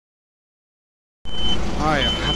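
Dead silence for just over a second, then a tractor engine running with a low, steady rumble. A short high electronic beep sounds as it comes in, and a man's voice starts near the end.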